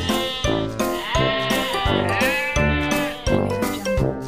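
Background music with a steady beat, over which a goat bleats twice with a quavering call, about one and two seconds in.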